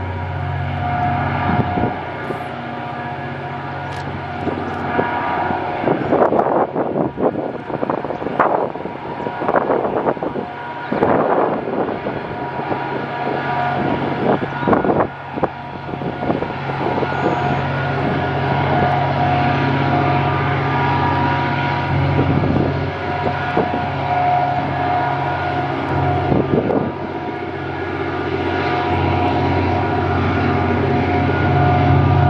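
EMD SD39 diesel locomotive hauling a container freight train, its engine a steady low drone with a higher whine above it, growing a little louder as the train approaches. Gusts of rushing noise come and go in the middle.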